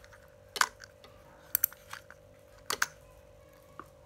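Three Star size-1000 plastic spinning reel being handled: a run of about six sharp plastic clicks, some in quick pairs, the loudest about half a second in, as its wire bail and crank handle are worked.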